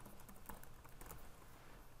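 Faint computer keyboard typing: a few soft, scattered key clicks.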